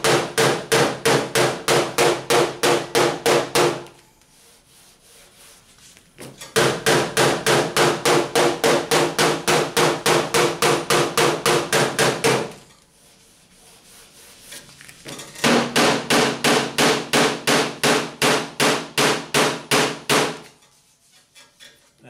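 Pick-point body hammer tapping rapidly on the bare steel hood of a 1977 Camaro Z28, about four to five light strikes a second, in three runs with short pauses between; each strike leaves the panel ringing. It is tapping down high spots where metal pokes through the body filler.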